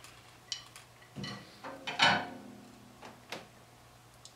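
A few light clicks and knocks at a drum kit, sticks and hardware being handled, with one louder knock about two seconds in that rings briefly, over a faint steady low hum.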